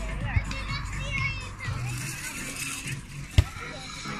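Spectators chattering over background music, with one sharp smack of a hand striking a volleyball about three and a half seconds in.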